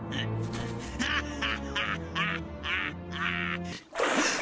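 An animated male character laughing: a quick run of short, nasal "heh" chuckles over background music. It cuts off just before the end.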